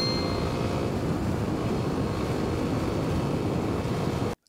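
Dual-sport motorcycle riding at road speed: a steady rush of wind on the microphone over the low drone of the engine.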